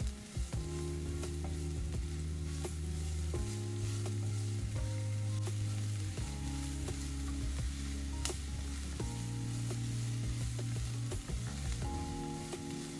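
Diced onion sizzling as it fries in oil in a nonstick pan, with occasional scrapes and taps of a wooden spatula stirring it. Soft background music of sustained low chords that change every few seconds plays underneath.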